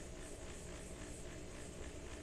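Faint, steady background noise with no distinct sound in it: a pause in the talking, only the outdoor ambience and microphone hiss.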